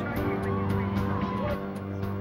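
Background music score: sustained low held tones, with a higher note sliding in pitch partway through.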